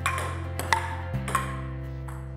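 Three sharp, ringing clicks of a ping-pong ball, about two-thirds of a second apart, over steady background music that begins to fade out near the end.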